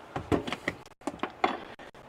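A series of light knocks and clunks as containers are set down and moved about on a wooden kitchen counter.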